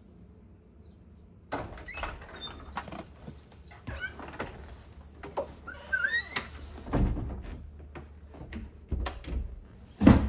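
A front door and its glass storm door being opened: a run of clicks and knocks with a few short high squeaks, then heavier thuds toward the end.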